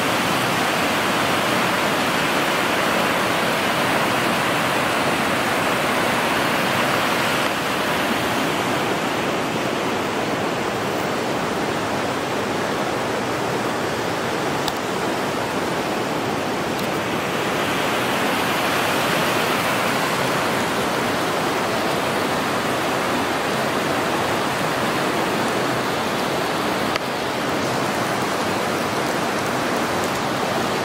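Steady rush of river water running over rocks, a full even noise that shifts slightly in tone and level a few times.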